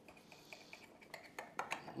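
Knife cutting through a baked lasagna in a glass baking dish, faint, with several light clicks of the blade against the glass in the second half.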